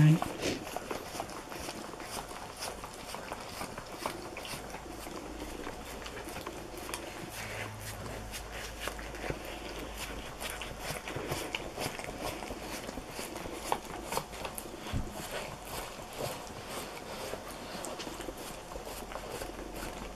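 A husky licking cream off the inside of a cardboard cake box: a long, irregular run of small wet licking clicks, its tongue working against the cardboard.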